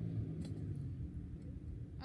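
Low outdoor rumble that fades away about halfway through, with one faint click.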